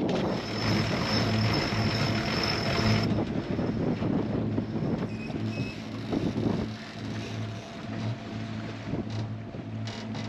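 A sailboat's inboard engine running steadily, with wind and water noise over it. In the first three seconds a high thin whine and brighter hiss sound as the anchor is brought up at the bow.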